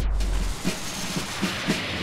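A whoosh transition sound effect that starts suddenly and thins out over a second or two. A low background drone cuts off about half a second in.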